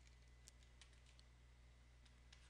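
Near silence: a faint steady room hum with a few faint, short clicks.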